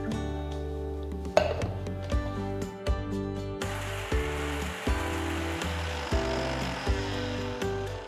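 Electric mixer grinder starting about halfway through and running for about four seconds, grinding ginger and green chillies into a paste, over background music with a steady beat.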